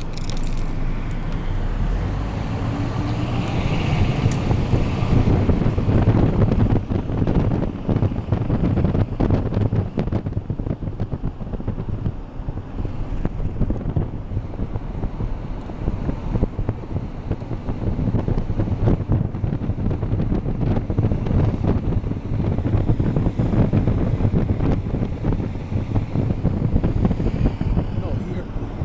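Wind buffeting the microphone over the low rumble of a car driving along.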